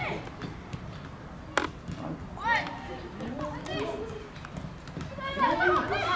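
Young players and coaches shouting and calling out across a football pitch, with voices growing louder and busier near the end. A single sharp thump comes about one and a half seconds in.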